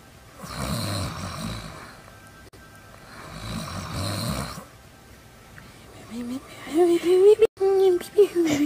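Performed snoring for a sleeping puppet: two long, rasping snores about three seconds apart. Near the end comes a higher, sliding vocal sound.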